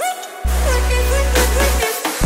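Electronic dubstep-style music played on a tablet drum-pad app (launchpad style): a deep bass note comes in about half a second in and holds for over a second, under a synth lead that slides up in pitch and settles lower, in a short repeating phrase.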